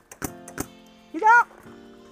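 Paintball marker shots: three sharp pops in the first second, followed by a short shout about a second in. Background music runs underneath.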